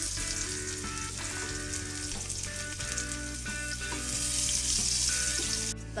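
Sliced shallots and garlic sizzling in hot oil in a frying pan, a steady hiss that grows louder about four seconds in and stops abruptly just before the end. Soft background music runs underneath.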